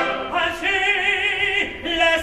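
Opera singing: after the fuller choral sound breaks off, a single voice holds a high note with wide vibrato for about a second, then sings a short second note.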